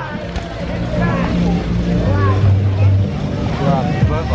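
Indistinct voices over a low, steady droning hum, the hum swelling about two seconds in.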